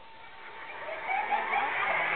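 Several people's voices talking at once. The chatter is faint at first and builds up from about half a second in.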